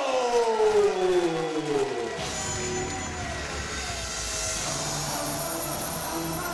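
A man's voice over the arena PA holds one long drawn-out call that slides down in pitch and fades after about two seconds. Entrance music with a deep, steady rumble then takes over.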